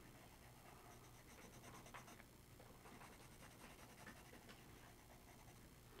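Charcoal pencil scratching across sketchbook paper in faint, repeated shading strokes.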